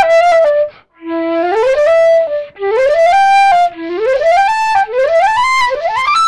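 Solo concert flute played unaccompanied: a melody of phrases that repeatedly slide upward in pitch, with a brief breath gap about a second in.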